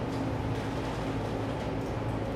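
Room tone: a steady low hum and hiss of a ventilation system.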